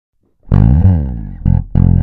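A momose MJB1 Jazz-Bass-style electric bass played fingerstyle. About half a second in, a long first note sounds and slides in pitch, followed by two short plucked notes.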